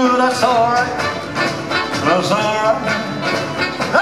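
Live rock-and-roll band playing an instrumental passage, with upright double bass, drums, electric guitar and horns carrying bending melodic lines.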